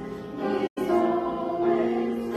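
A small group of women singing together, holding long notes. The sound drops out completely for an instant about two-thirds of a second in.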